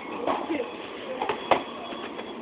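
Handling noise from a paper bag of fry cartons: a few sharp knocks and rustles, the loudest about a second and a half in, under faint background voices.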